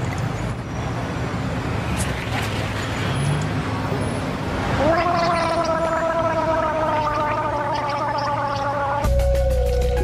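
A person gargling a mouthful of chocolate milk, holding a tone that drifts slowly down in pitch for about four seconds, starting about halfway through. Music with a heavy bass cuts in near the end.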